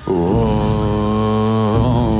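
Male lead vocal from a live rock band holding one long sung note, with a change of note near the end, over a steady low upright-bass part.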